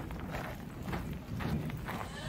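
Hurried walking footsteps, about two steps a second, with wind rumbling on the microphone.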